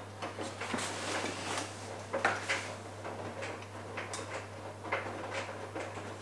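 A loaded hiking backpack being handled to hook it onto a hand-held scale: fabric rustling and scattered small clicks and knocks from straps and buckles, under a low steady hum.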